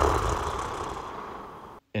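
A sleeping person snoring. One long breath with a low flutter starts loud and fades away over nearly two seconds.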